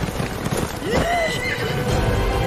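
A horse whinnies once, a call that rises and then falls about a second in, over a steady rushing background.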